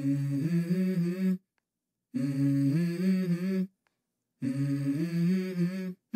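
A voice humming a short melody from a song, in three phrases of about a second and a half each with brief silences between them; the pitch steps between a few held notes.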